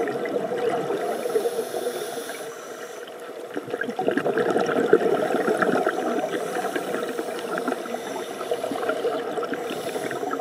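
Underwater sound of a scuba diver breathing through a regulator: a soft hiss of inhaling about a second in, then gurgling, crackling rushes of exhaled bubbles.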